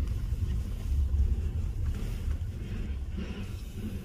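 Steady low rumble of a car's engine and tyres heard inside the cabin while driving on a dirt road.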